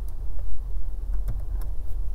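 Steady low background rumble with a few faint clicks of computer keys or a mouse, as copied text is pasted in.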